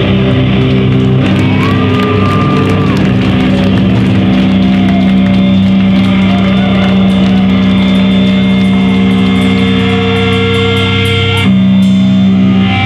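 Hardcore band playing live through amplifiers: distorted electric guitar and bass holding long, droning notes, with a brief high feedback whine about two seconds in and scattered cymbal hits.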